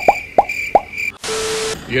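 Edited-in cartoon sound effects: a quick run of four 'bloop' pops, each dropping in pitch, over a thin high steady tone, then a half-second burst of static with a low buzz that cuts off suddenly.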